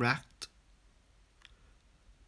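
A voice finishing a word, then near-silent room tone broken by two faint clicks.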